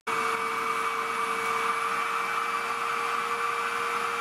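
Vacuum motor running steadily with a constant whine, its hose sucking fine dust from a bucket through a cyclonic separator and a wet scrubber.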